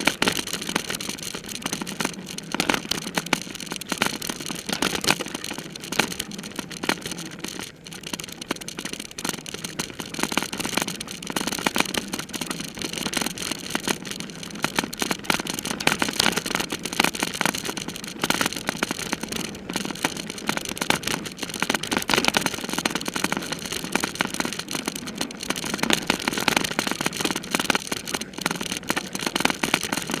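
Bicycle ridden fast over a bumpy dirt trail: constant tyre and wind rush, broken by rapid rattles and clicks as the bike and its camera mount jolt over the ground.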